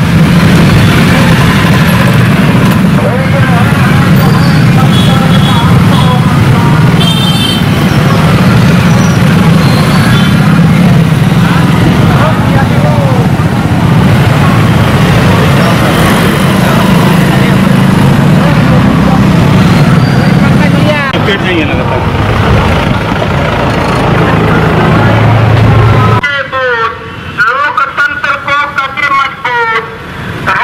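A procession of motorcycles and scooters riding slowly past, many small engines running together in a dense, steady drone, with voices mixed in. Near the end the engine noise drops and a man's voice comes to the fore.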